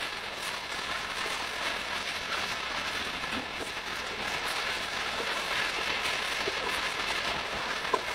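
Liver, onions, peppers and diced tomatoes frying in a pan with a steady sizzle as they are stirred with a spatula. A single sharp click at the end.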